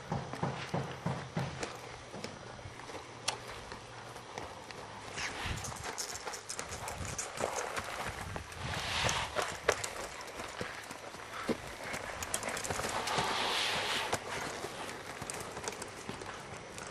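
Hoofbeats of a Percheron-Appaloosa cross horse being ridden on sand footing. There are evenly spaced thuds at first, then scattered softer clicks and thuds.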